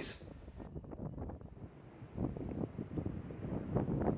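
Wind buffeting the microphone outdoors: an uneven low rumble that grows a little louder about two seconds in.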